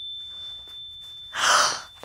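A woman's short, breathy gasp about a second and a half in.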